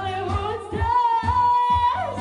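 A woman singing into a handheld microphone over a backing track with a steady beat, holding one long note in the second half.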